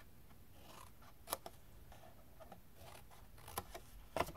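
Small paper snips scissors cutting into cardstock, quiet, with a few short snips: a sharp one about a second in and another near the end.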